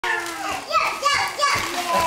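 A toddler babbling and vocalizing in a high voice, without clear words.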